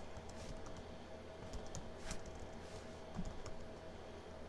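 Typing on a computer keyboard: irregular, quick key clicks as a name is entered, over a faint steady hum.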